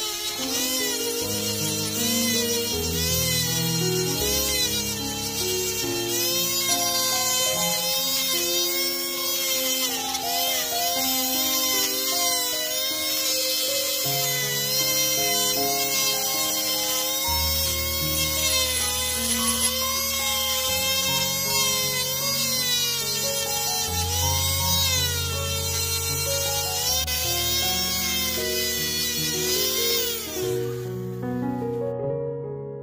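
Background music over the whine of a handheld rotary tool running a rubber polishing bit against a copper ring, its pitch wavering as the bit is pressed and eased.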